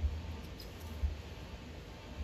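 Low rumble of wind buffeting the microphone in uneven gusts, with a few faint high squeaks about half a second in.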